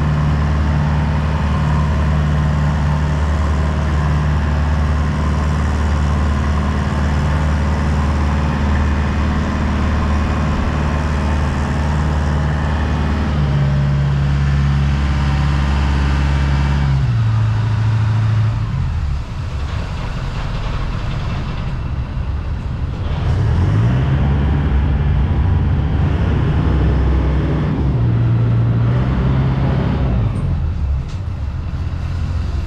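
Small passenger ferry's engine running steadily under way, a loud low hum. About halfway through its note drops as the boat throttles back, then rises again a few seconds later.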